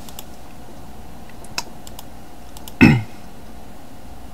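A few scattered, sharp computer-keyboard clicks over a steady background hum. About three quarters of the way in comes one short, louder voiced sound from the person at the computer, falling in pitch.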